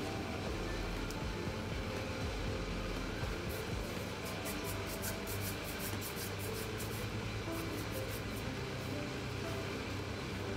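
Water simmering in an electric hotpot, a steady bubbling hiss, with faint music underneath and a run of soft rapid ticks in the middle.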